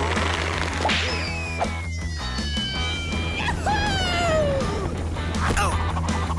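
Cartoon action music with whooshing sound effects, including a long falling whistle-like glide about a second in and a shorter falling glide later on.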